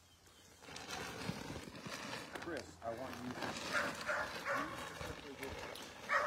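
Faint background voices with light rustling and clicks. The sound cuts out completely for about the first half second.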